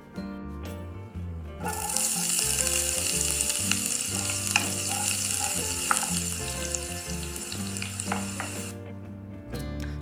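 Diced onions sizzling as they fry in a pan, a steady hiss with a few sharp ticks, starting about two seconds in and stopping a little before the end. Quiet background music with low held notes plays underneath.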